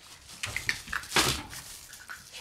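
Shiba Inu puppy nosing and pushing right against the camera, making close sniffing and bumping noises on the microphone, with a few short high squeaks. The loudest bump comes about a second in.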